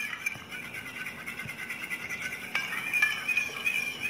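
A metal spoon stirring formula milk in a small steel bowl, rubbing against the bowl with a steady thin high squeak and a few light clinks.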